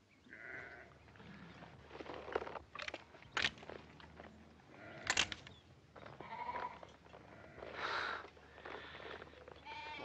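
A flock of sheep bleating, with a string of separate calls at irregular intervals.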